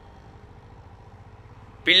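Faint, steady low background hum in a pause between speech; a man's voice comes back in near the end.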